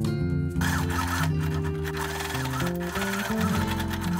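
Singer electric sewing machine running and stitching fabric, starting about half a second in, over background music.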